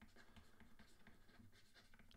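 Near silence, with the very faint scratching and tapping of a stylus writing on a tablet.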